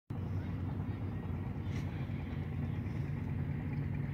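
A steady, low engine drone with no change in pitch.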